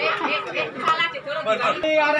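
Crowd chatter: many people talking over one another.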